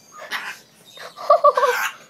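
African grey parrot squawking: a short harsh call, then a louder, wavering squawk in the second half.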